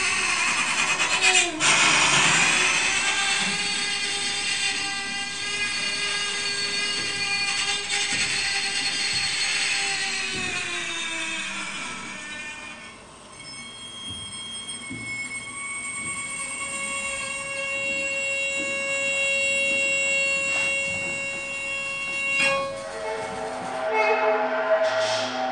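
Wire strung along a wall, bowed and amplified through pickups clipped onto it, giving sustained drones thick with overtones. The dense sound thins about halfway through to a few steady high tones held together, which cut off near the end.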